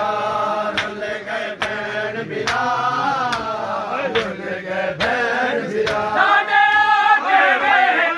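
Men chanting a noha, a mourning lament, with a steady beat of hands slapping bare chests in matam, a little faster than once a second.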